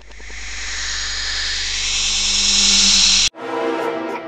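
A hissing noise that swells steadily louder for about three seconds over a low hum, then cuts off abruptly.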